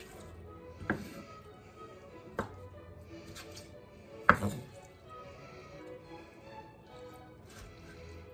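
A kitchen knife chopping artichokes on a wooden cutting board: three separate knocks of the blade against the board in the first half, the third the loudest, over faint background music.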